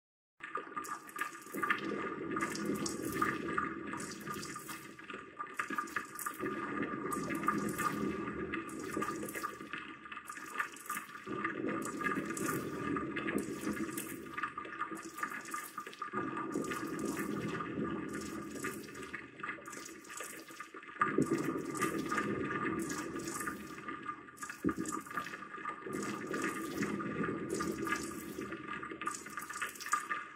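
Looping transformation sound effect: a steady noisy rush with a sharp pulse about every 0.7 s and a lower layer that repeats about every five seconds.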